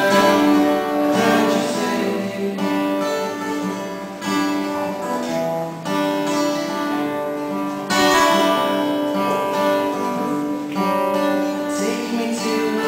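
Acoustic guitar played live, chords strummed and left to ring, with a new chord about every two seconds.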